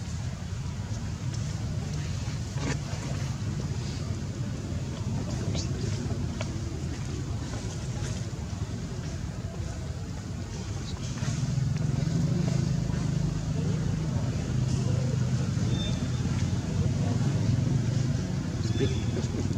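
Steady low motor hum, like an engine running close by, growing louder about eleven seconds in.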